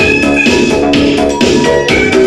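Loud high-energy (Hi-NRG) electronic dance music played from a DJ's turntables, with sustained synthesizer chords that change right at the start.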